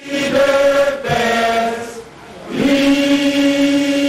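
A group of voices chanting in unison on long held notes, in two phrases with a short dip between them.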